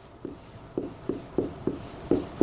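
Pen writing on a large touchscreen board: a quick run of short taps and strokes, about eight in two seconds.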